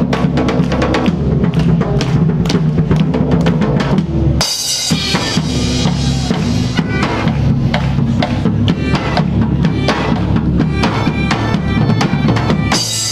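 Live band music: German bagpipes playing sustained tones over a steady, driving beat of large bass drums and crashing cymbals.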